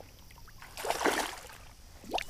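A brief splash and rush of water about a second in, as a hooked carp is scooped into a landing net at the water's surface.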